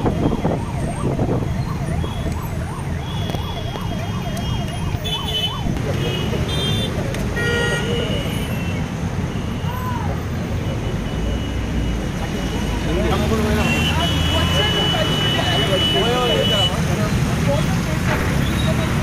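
Road traffic rumble with a siren rising and falling quickly, about three times a second, for the first five seconds or so. In the second half, people's voices talk over the traffic.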